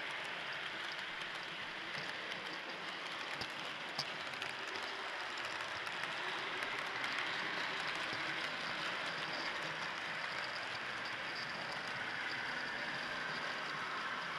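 Steady rolling rattle and hiss of a model railway tender's wheels running along the track, heard from a mini camera riding on the tender, with a faint click about four seconds in.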